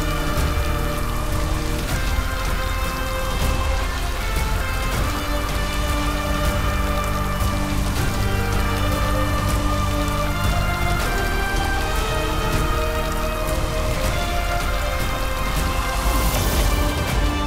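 Background music of sustained, slowly changing chords, with a dense fine crackle running through it.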